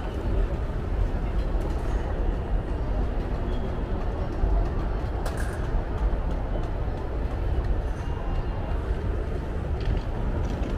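Busy airport terminal hall ambience: a steady low rumble with faint background chatter of travellers.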